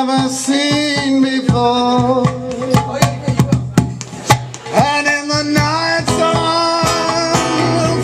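Live acoustic guitar strumming with a man singing; the voice drops out for a moment in the middle, leaving sharp strums.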